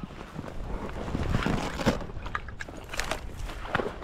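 A person in waders sloshing through shallow marsh water, with irregular splashes from the steps, over steady wind noise on the microphone.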